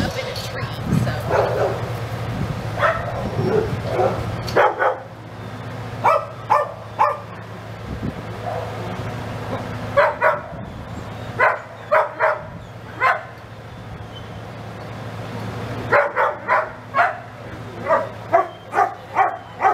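A dog barking in short, high yips, in quick runs of two to four with pauses between.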